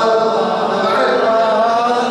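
Male voice chanting a melodic Arabic religious recitation, a celebratory jalwa, in long held, gliding notes.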